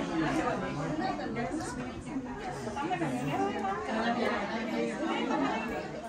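Several people talking at once: continuous overlapping chatter.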